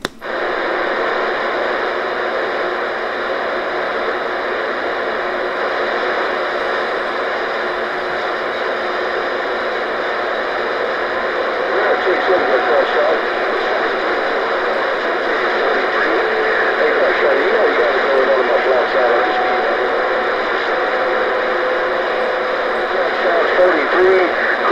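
CB radio receiver in rough band conditions: a steady rushing static, with faint, warbling voices of distant stations breaking through it from about halfway in and getting a little louder.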